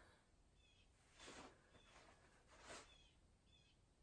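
Blue jays squawking, faint: two harsh calls about a second and a half apart, with a few fainter short high notes between them.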